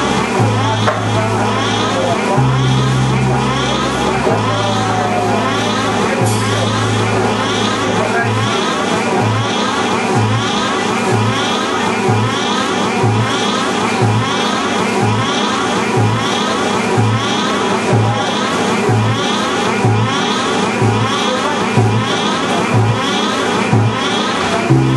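A live noise-rock band of saxophones, bass guitar and drums plays a dense, distorted, chaotic wash of sound. The bass holds long low notes at first. From about eight seconds in it switches to short repeated notes, about one and a half a second, on a steady beat.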